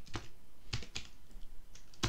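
Computer keyboard being typed on: a few short, irregularly spaced keystrokes.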